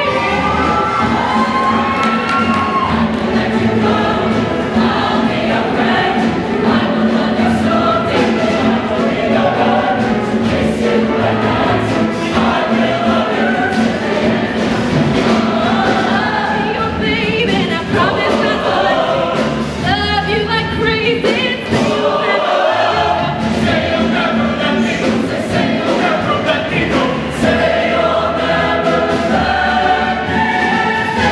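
Show choir singing in full ensemble over a live show band with a steady beat. The bass drops out for about a second roughly three-quarters of the way through, then comes back.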